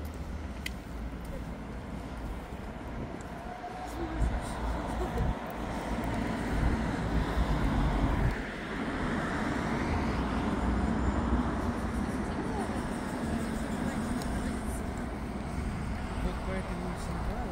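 Road traffic on a city street, a steady wash of noise with a car passing about halfway through, swelling and then fading.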